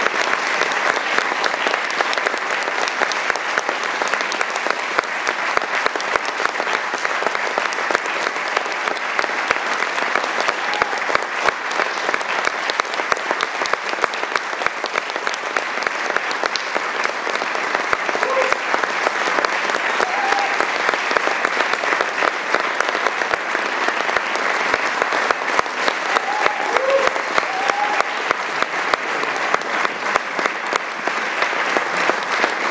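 Audience applauding steadily, a sustained ovation, with a few brief cheers rising over it in the second half.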